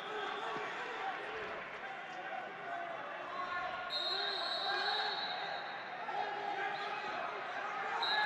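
Wrestling hall ambience: distant voices and calls from around the mats, with occasional dull thuds. A high, steady whistle-like tone sounds about four seconds in and lasts a second and a half.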